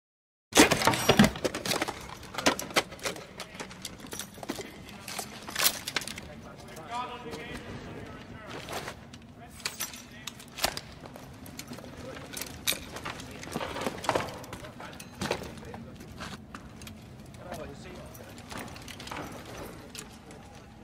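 Thompson M1928 .45 submachine gun sound effects: a short rapid burst of automatic fire about half a second in, then scattered single sharp cracks and metallic clacks. A voice calls out about seven seconds in.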